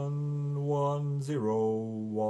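A male voice singing slow, long-held notes in a chanting style, the pitch changing once about a second and a half in.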